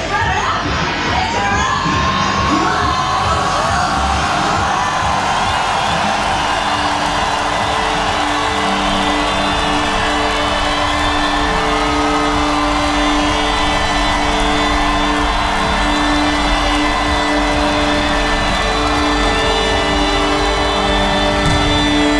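A large festival crowd cheering and shouting over a sustained drone of long held notes as a rock band's set begins.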